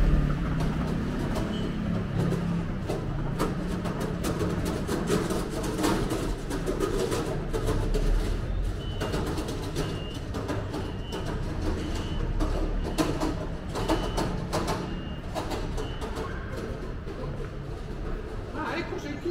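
City street ambience: a steady low rumble of distant traffic with irregular clicking footsteps. From about halfway through, a short high beep or chirp repeats roughly once a second for several seconds.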